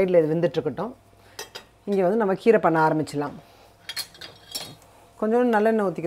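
A metal spoon clinking and scraping against a saucepan of boiled lentils, with a woman's voice in between.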